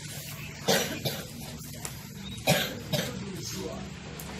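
A person coughing: a sharp cough just under a second in, then a louder one about two and a half seconds in, followed closely by a smaller cough.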